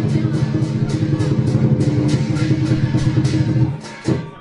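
Lion dance percussion: a Chinese drum with clashing cymbals and gong, beaten in a fast steady rhythm of about three to four strikes a second, breaking off near the end.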